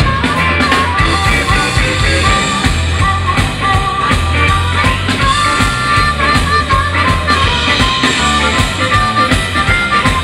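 Live electric blues band playing a shuffle, with a harmonica solo cupped into a microphone over electric guitar, bass guitar, keyboard and drum kit.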